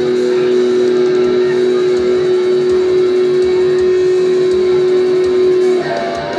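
Electric guitar in a live rock band holding one long sustained note over a steady low beat, the note stopping shortly before the end as busier playing comes in.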